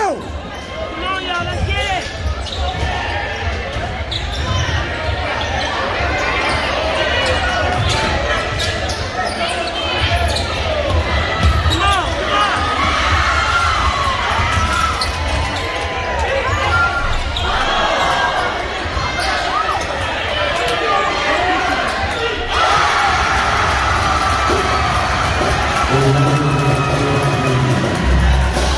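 Basketball dribbled on a hardwood gym floor during live play, amid crowd voices and shouting in an echoing gym.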